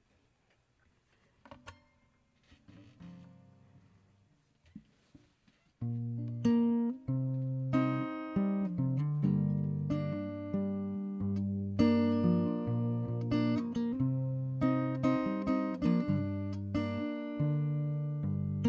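An acoustic guitar starts playing the chord intro of a song about six seconds in. The notes ring on between regular plucked chords. Before that there are a few seconds of near quiet with only faint small sounds.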